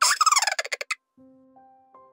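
A short, loud cartoon sound effect: a pitched, rapidly warbling, gobble-like call lasting about a second. It is followed by faint, soft musical notes stepping upward one by one.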